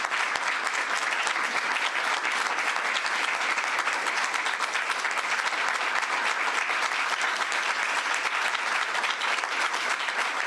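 A standing audience applauding steadily, sustained clapping from many hands with no break.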